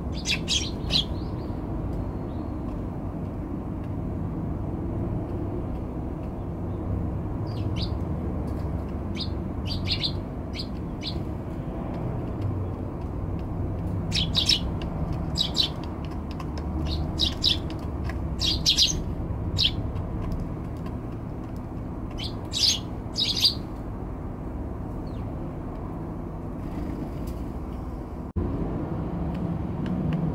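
Eurasian tree sparrows giving short, high chirps in scattered clusters, over a steady low background rumble.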